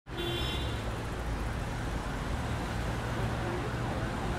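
Steady city traffic noise: a low rumbling drone under an even hiss.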